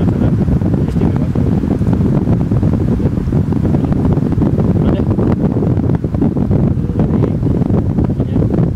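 Wind buffeting the microphone: a loud, continuous low rumble with no break.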